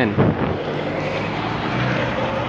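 Road traffic going by: a steady rush of car tyre and engine noise.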